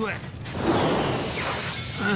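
A cartoon sound effect: a sudden, loud shattering rush of noise begins about half a second in and runs on for more than a second, after a brief bit of voice at the start.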